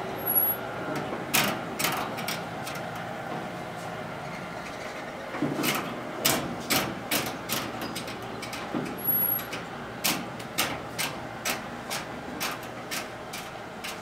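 Gas grill with its rotisserie turning: sharp clicks over a steady low hiss. The clicks are scattered at first, then settle into an even pace of about two a second.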